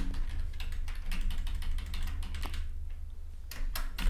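Computer keyboard typing: a quick run of keystrokes that pauses about two-thirds of the way through, then a couple more keystrokes near the end.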